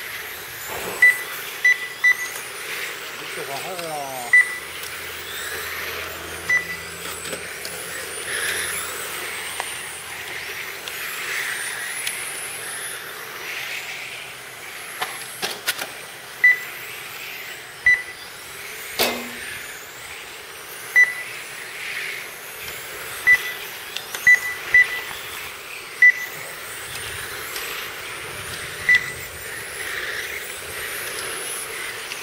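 Electric radio-controlled touring cars racing: high-pitched motor whines rising and falling as the cars accelerate and brake, with short identical electronic beeps from the lap-timing system at irregular intervals of a second or two as cars cross the line. A sharp click sounds about two-thirds of the way through.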